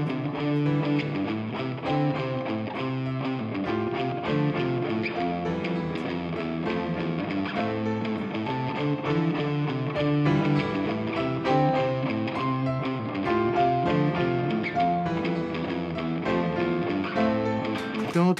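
Playback of a short music arrangement: a guitar part over a chord progression that the Scaler plugin plays in one of its rhythmic performance patterns. The notes change steadily throughout, with no pauses.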